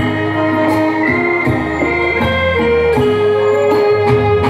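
Live band playing an instrumental passage: held organ-like melody notes that change about once a second over a steady bass line, with light cymbal hits.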